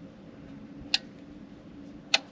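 Handheld battery load tester being worked during a load test on a new battery: a single sharp click about a second in, over a faint steady low hum.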